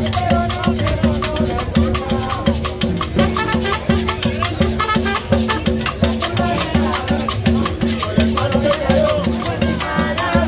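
Live street band playing Latin dance music: drums and a shaken rattle keep a steady beat under a bass line, with a trumpet carrying the melody.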